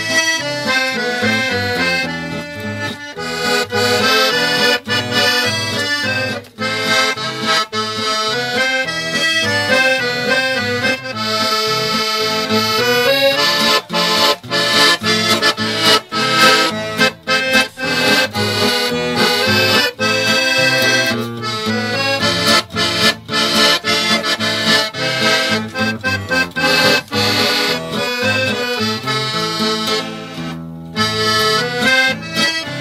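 Accordion playing a traditional tune, with quick runs of notes throughout.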